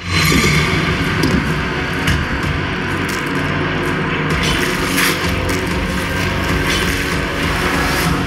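Horror teaser soundtrack played through PA speakers in a large hall: a loud, dense wash of low noise with scattered clicks and crackles that starts suddenly.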